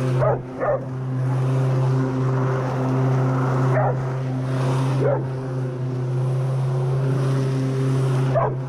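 A rotary lawnmower runs steadily while a Labrador barks close to the microphone. There are two quick barks at the start, single barks in the middle, and one near the end.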